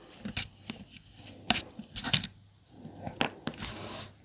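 A handful of sharp little clicks and taps, spread out, as a small metal hex key and loose screws knock against the plastic housing of a Parkside X20V Team battery pack being taken apart.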